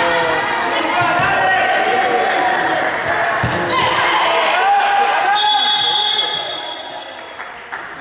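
Voices shouting and calling during a basketball game, echoing in a gymnasium, with a few thuds of a ball bouncing on the wooden court. A brief high steady squeal about five and a half seconds in, and the shouting dies down near the end.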